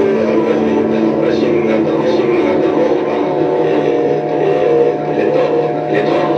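Live electronic drone music: several held low tones under a dense, wavering mid-range texture, steady in level.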